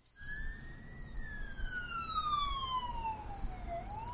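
A siren wailing, starting abruptly. Its pitch rises to a peak about a second in, slides slowly down for nearly three seconds, and starts to climb again near the end, over a low rumble.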